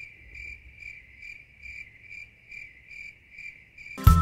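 Faint cricket chirping in an even rhythm, about three chirps a second: the stock cricket sound effect used to mark an awkward silence.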